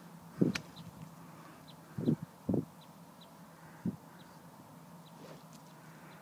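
A golf driver striking a teed ball: one sharp click about half a second in. Afterwards there is quiet open-air background with a few dull low thumps and faint high bird chirps.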